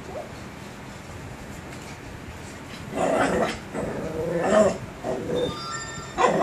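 Dog whimpering and whining: several short, pitched cries in bouts starting about halfway through, after a quieter first half.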